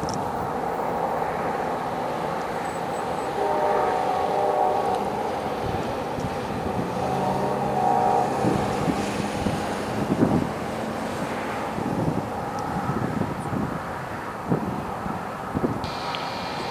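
Freight train of enclosed auto-rack cars rolling past: a steady rumble of steel wheels on rail. Faint brief whines come about a quarter and halfway through, and scattered knocks run through the second half.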